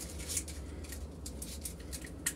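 End of a copper gas pipe being cleaned by hand where the olive will sit, heard as a series of short, faint scratchy rubbing strokes.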